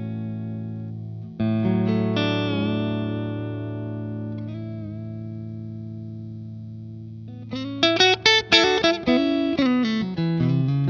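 Electric guitar with single-coil pickups (FSC Highline ST) played through a Henry Amplification FSC 50 tube amp, with an FSC KB1 Klon-style clone-and-boost pedal engaged. A chord struck about a second and a half in rings out and slowly fades for several seconds. Near the end comes a quick, louder run of picked notes and chord stabs.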